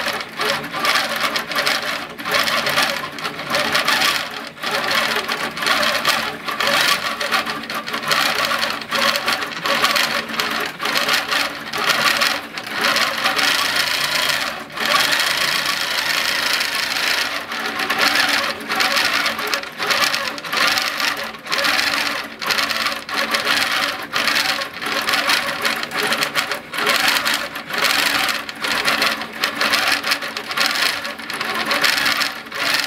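Handi Quilter Infinity longarm quilting machine stitching continuously, the needle running rapidly through the quilt layers. The stitching sound dips briefly many times as the machine travels the pattern.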